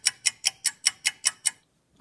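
Clock-ticking sound effect of an on-screen countdown timer: crisp, even ticks about five a second, stopping about one and a half seconds in.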